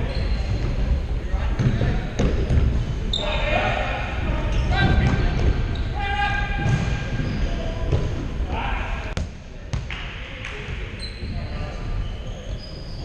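Indoor futsal play on a wooden sports-hall floor: the ball thudding off feet and floor, with two sharp kicks a little after nine seconds, shoes squeaking and players calling out, all echoing in the large hall.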